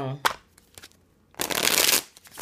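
A deck of large oracle cards riffle-shuffled by hand: one quick, dense riffle of card edges about a second and a half in.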